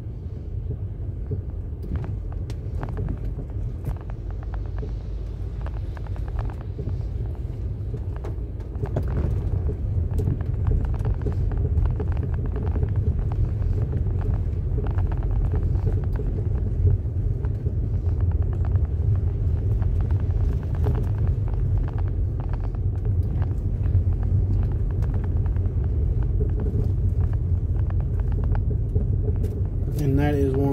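Low, steady road rumble heard inside a vehicle's cabin as it drives slowly over a wet dirt road, with scattered small clicks and ticks throughout. The rumble grows louder about nine seconds in.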